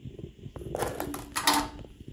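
Plastic blister packs of soft-plastic lures being handled, giving two short crinkling rustles in the second half, the second louder.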